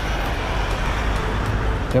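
Steady city road traffic: a continuous low rumble with a hiss of passing vehicles.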